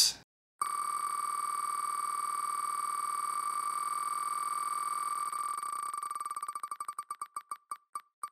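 Online name-picker wheel's tick sound effect while the wheel spins: the beeping ticks start about half a second in, come so fast that they blur into one steady tone, then slow into separate ticks that spread further apart over the last couple of seconds as the wheel winds down.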